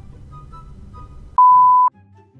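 A single loud, steady electronic beep tone lasting about half a second near the end, over faint background music.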